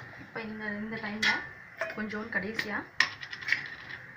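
Metal ladle stirring mushroom gravy in a pressure cooker, with a few sharp clinks of the ladle against the pot.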